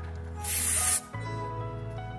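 One short spray from an aerosol can, a burst of hiss lasting about half a second, starting about half a second in. Background music plays under it.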